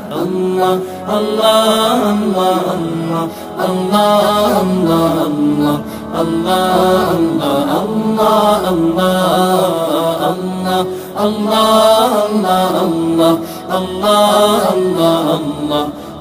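Devotional chanting of 'Allah, Allah' repeated over and over, sung as part of a Bengali gojol (Islamic devotional song).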